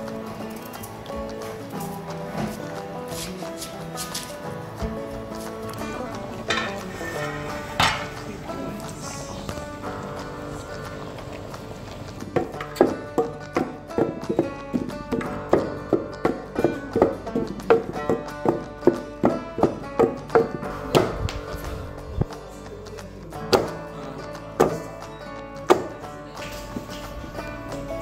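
Background music, and partway through a wooden pestle pounding yam in a wooden mortar: regular dull thuds, about two a second, for some ten seconds, with a few scattered thuds later.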